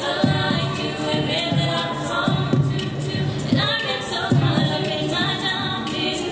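Girls' a cappella choir singing, several voices in harmony over a steady beat.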